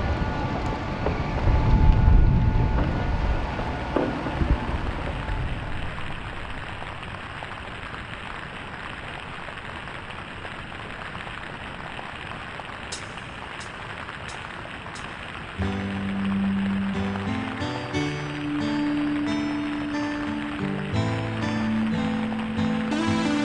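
Steady rain falling, under background music: music in the first few seconds, then rain alone, then music with held low notes coming in about two-thirds of the way through.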